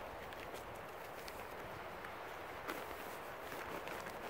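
Quiet, steady outdoor background hiss with one light tick a little before three seconds in, from hands working a cord on a plastic tarp.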